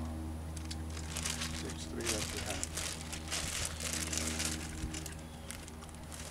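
Clear plastic bag crinkling as it is handled, in crackly bursts mostly from about two seconds in, over a steady low hum.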